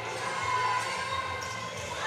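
A basketball being dribbled on a hardwood gym court, over the steady background noise of the hall and its crowd.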